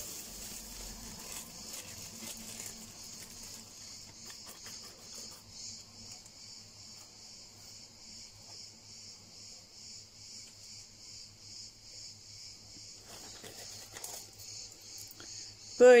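Steady high insect chirping in an even pulsing rhythm, over a low steady hum. For the first few seconds it is joined by faint rustling of dried basil leaves and a plastic bag as they are emptied into a steel pot.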